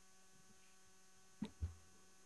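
Steady electrical mains hum from the microphone and sound system. About a second and a half in come two quick knocks, a quarter second apart, as a book or folder is set down on the wooden pulpit.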